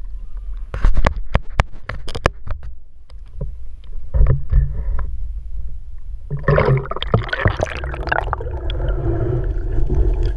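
Water sloshing and gurgling around an action camera's housing as it is dipped through the river's surface. A run of sharp clicks and knocks comes in the first couple of seconds, and a louder rush of churning water starts a little past the middle as the camera goes under.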